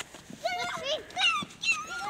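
Young children's high-pitched voices: a few short calls and exclamations without clear words.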